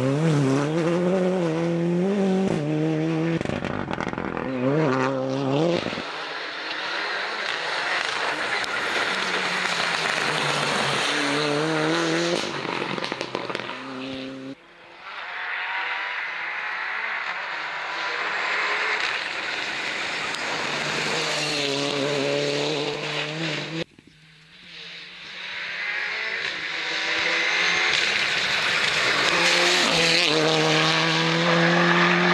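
Abarth 124 Rally car's turbocharged four-cylinder engine revving hard and changing gear as the car drives past on tarmac. The pitch climbs and drops repeatedly, and the sound cuts off abruptly about 15 and 24 seconds in as one pass gives way to the next.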